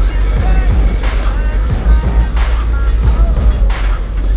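Music played loud through a car audio system, dominated by heavy sub-bass with sliding bass notes and a sharp drum hit about every second and a half.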